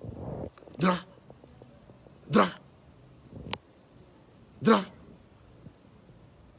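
A man's voice giving three short, loud shouts of "Dra!", about two seconds apart.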